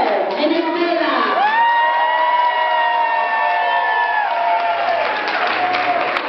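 A group of young children's voices calling out together, rising about a second and a half in to a long, high, held note that lasts about three seconds before trailing off, over crowd noise in a large hall.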